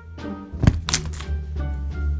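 A plush toy falling onto a bed with a thunk and a second knock just after, over background music.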